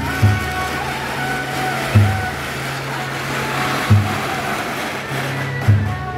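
Temple procession music: a deep drum beat about every two seconds over a steady low drone, under a dense hissing wash of noise that swells in the middle.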